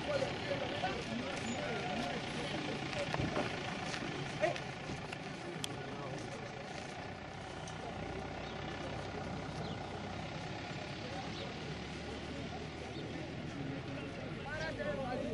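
A steady motor hum under faint voices.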